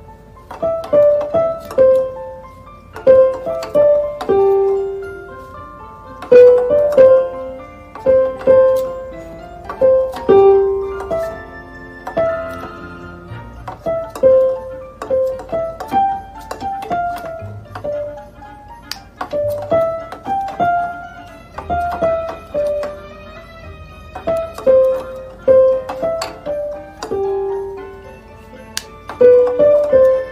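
An African grey parrot pecking notes on a The ONE Light electronic keyboard with its beak. Single notes come in short groups of two to four with pauses between, along with the knock of the beak on the keys.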